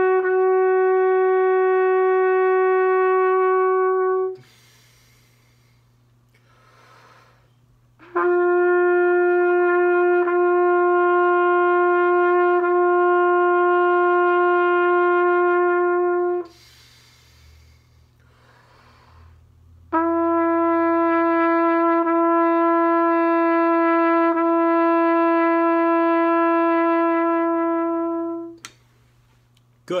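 Trumpet playing long tones in a chromatic warm-up: three steady held notes of about eight seconds each, each a half step lower than the last, with pauses of a few seconds between them.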